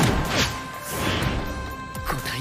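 Anime fight sound effects: a loud crash right at the start and a second hit about half a second in, over sustained background music.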